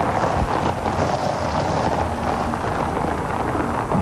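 A car rolling slowly over a gravel driveway, its tyres crunching steadily on the loose stones.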